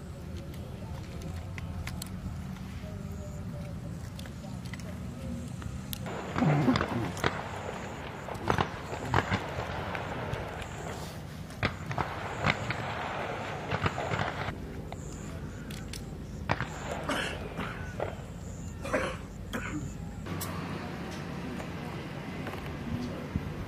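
Outdoor field ambience with a steady low hum and indistinct voices, broken by scattered sharp clicks and knocks of rifles being handled. The background changes abruptly a few times.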